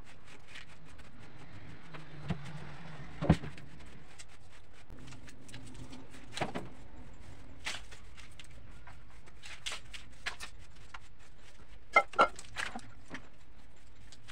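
A small hand brush sweeping bits of bone and food scraps across a floor: scattered light clicks and knocks over a steady low background.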